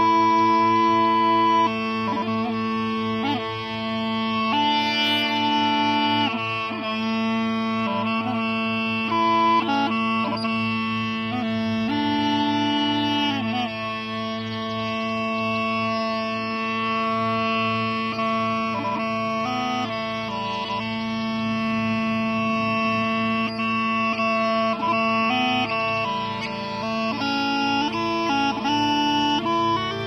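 Scottish smallpipes playing a tune: steady drones hold underneath while the chanter carries a melody that moves between notes, broken by quick grace-note flicks.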